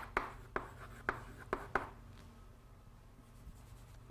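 Chalk writing on a blackboard: a quick run of short taps and scrapes through the first two seconds as a word is chalked, then it goes quieter.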